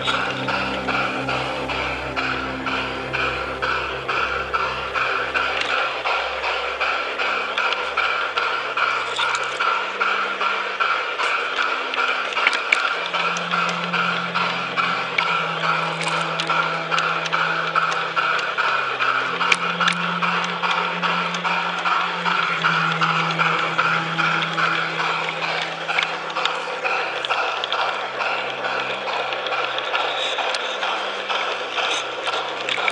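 Music with held low notes that step in pitch every second or two, over the steady fine rattle of an LGB garden-railway train running along the track.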